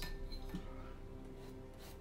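A paintbrush clinking against the inside of a glass rinse jar as it is swished clean, over soft background music with sustained notes that fade.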